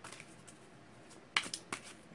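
Deck of tarot cards being shuffled by hand: faint card clicks, then three sharp snaps in quick succession a little past halfway.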